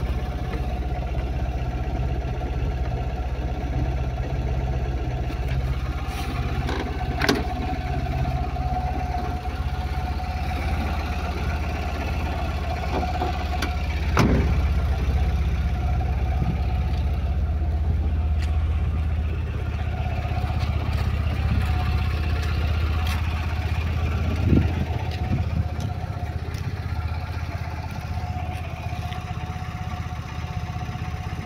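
Tata Ace Gold pickup's engine idling steadily. A few sharp knocks break in, the loudest about fourteen seconds in.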